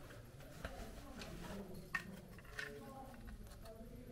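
Faint footsteps on a hard floor: four quiet steps, about two-thirds of a second apart.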